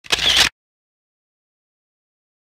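A half-second sound effect edited in at the very start, then the audio cuts to dead silence.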